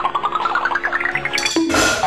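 Cartoon-style comedy sound effect: a rapid run of notes climbing steadily in pitch over a held low tone. It is cut off about 1.7 s in by a loud burst of noise.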